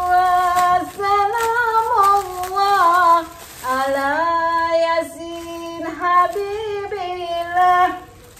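A woman singing solo in long held notes that step up and down, two phrases with a short break about halfway through.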